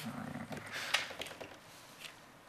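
A person's low, hum-like voice sound, followed about half a second later by breathy bursts like an exhale, without words.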